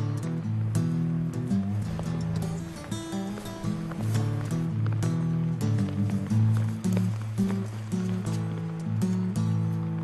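Background music: a bass line moving in steady notes under a regular beat.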